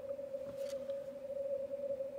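Yaesu FTdx5000MP receiver audio in CW mode through a 100 Hz filter with audio peak filter and digital noise reduction. It is a steady, narrow band of rushing noise pitched near 600 Hz, with no clear keyed Morse standing out from it. The weak station has little signal above the noise.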